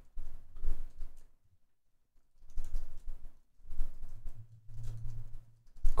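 Faint computer-keyboard typing in short runs with brief pauses, and a low hum for about two seconds near the end.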